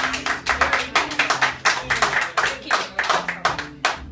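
Audience applause: many hands clapping quickly and unevenly, with the acoustic guitar's last chord still ringing faintly underneath. The clapping thins out near the end.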